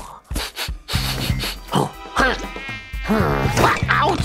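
A few quick clicks, then a buzzing sound whose pitch swoops up and down repeatedly, like a cartoon insect buzz.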